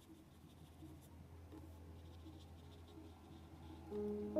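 Faint strokes of a paintbrush on watercolour paper over a low steady hum.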